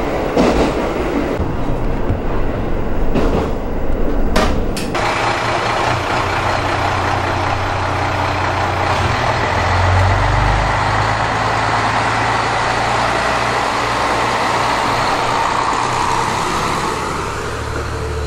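JR Hokkaido KiHa 54 single-car diesel railcar. First it clatters along the track, heard from inside the cab, then its diesel engine runs as it stands at a platform and throttles up about ten seconds in as it pulls away and runs past.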